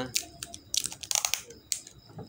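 Adhesive tape being pulled and handled off a roll: a run of small clicks and short crackling rips, the longest about a second in.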